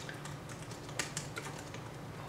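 Typing on a computer keyboard: a run of unevenly spaced key clicks as a short file name is typed.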